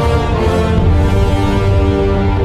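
Full symphony orchestra playing film-score music: held chords over a strong low bass.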